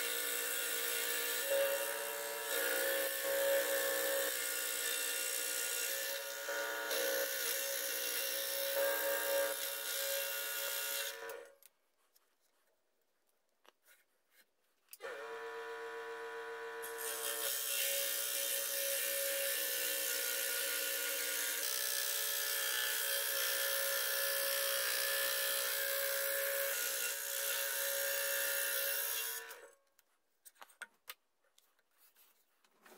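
Electric scroll saw running and cutting through a strip of wood: a steady motor hum with the blade buzzing over it. It falls silent about a third of the way in, starts again a few seconds later, and stops near the end.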